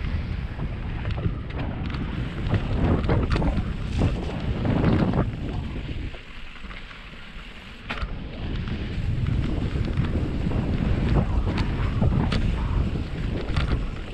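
Wind buffeting the microphone and mountain bike tyres rolling over a dirt trail at speed, with many sharp clicks and rattles from the bike over bumps. The noise drops quieter for about two seconds past the middle, then picks up again after a sharp click.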